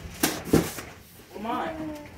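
Two sharp knocks, about a third of a second apart, from cardboard boxes and gift bags being handled, followed by a short stretch of voice in a small room.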